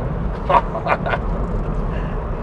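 In-cabin running noise of a Mk8 Ford Fiesta ST's 1.5-litre three-cylinder engine and its tyres on the road: a steady low rumble. A few short vocal sounds come through it about half a second to just over a second in.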